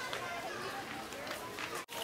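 Faint background voices over steady outdoor noise, broken by a sudden brief dropout near the end.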